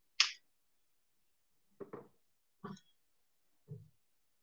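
Butchering handling sounds on a plastic cutting board: a sharp click, then three soft knocks about a second apart as a goat leg is moved about and the boning knife is laid down on the board.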